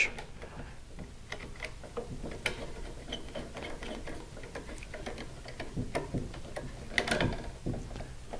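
Screwdriver backing out the terminal screws of an old single-pole light switch to free its wires: a run of small, irregular metal clicks and scrapes, with a few louder knocks near the end.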